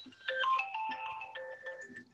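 A mobile phone ringtone playing: an electronic melody of short, clean single notes stepping up and down in pitch.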